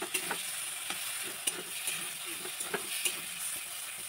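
A spatula stirring and scraping a thick paste as it fries in oil in a steel wok, with a steady sizzle and scattered clicks of the spatula against the pan.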